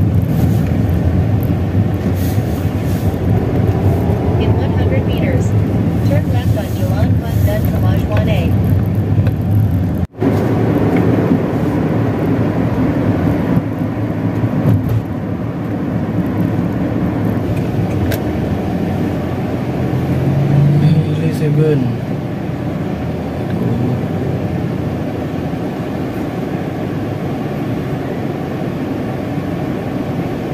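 Steady road and engine rumble inside a moving car, with faint voices at times, cutting out for an instant about ten seconds in.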